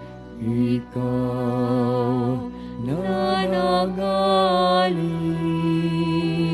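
Slow church music: a voice sings long held notes with vibrato, sliding up into a higher note about three seconds in, over sustained keyboard chords.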